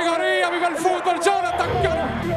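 A man's voice over music, with a low rumble coming in near the end.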